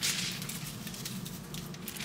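Faint, soft rustling of aluminium hair foil and hair as colour is brushed onto a foiled section, a steady light hiss over a low room hum.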